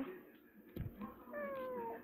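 A cat meowing once: a single drawn-out call lasting about a second that falls slightly in pitch, just after a short thump.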